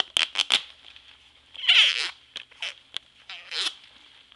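Squeaks made with a sweaty hand rubbing against the microphone. A quick run of short squeaks comes first, then a longer squeak falling in pitch about two seconds in, a few short clicks, and another falling squeak near the end.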